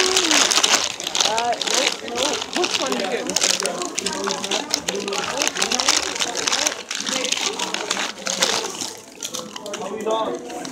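Indistinct voices of people talking in the background, with clear plastic packaging crinkling as it is handled.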